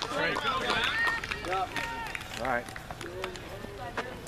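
Several voices of players and spectators calling out and chattering over one another, with no clear words.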